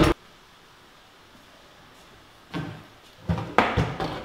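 A sharp knock at the start, then a quiet stretch, then several short knocks and clatters in the second half as a wooden locker door is opened and handled.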